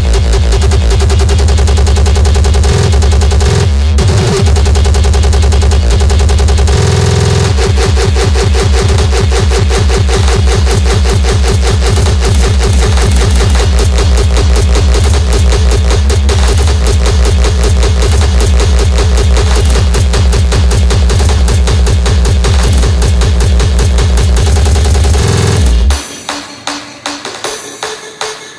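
Terrorcore (very fast hardcore techno) playing loud in a DJ mix: a dense, rapid stream of kick drums with a brief break in the beat about seven seconds in. The music drops away suddenly at the very end.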